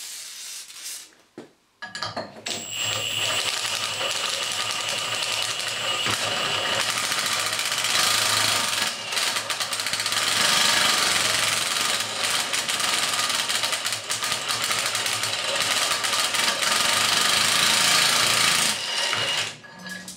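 Milwaukee M18 Fuel cordless impact wrench hammering as it drives an impact step cutter through 6 mm steel plate, enlarging a hole. It is a continuous fast rattle that starts about two seconds in and stops shortly before the end.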